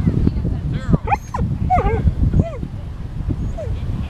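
A dog barking in short, high yips, about half a dozen spread across a few seconds.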